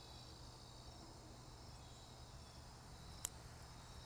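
Near silence: a faint, steady high-pitched insect trill, cricket-like, with one small click a little over three seconds in.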